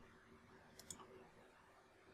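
A single faint computer mouse click a little under a second in, against near silence.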